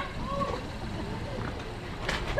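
A faint voice over a steady low outdoor rumble.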